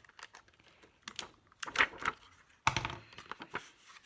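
Clicks and clatter of a metal Crop-A-Dile eyelet punch and setter being squeezed and handled against a paper card while setting an eyelet. The clicks come irregularly, with a sharper knock about two-thirds of the way through.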